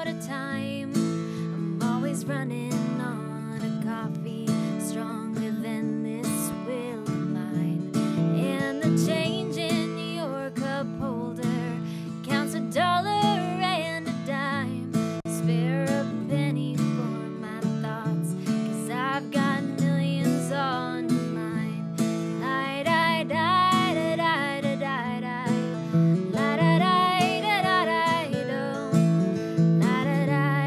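Two acoustic guitars playing a song together, with strummed chords and picked notes.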